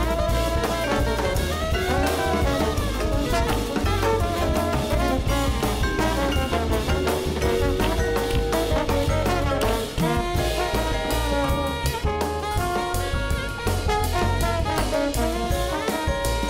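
Live modern jazz quintet playing: trombone and tenor saxophone lines over vibraphone, double bass and a drum kit keeping time on cymbals.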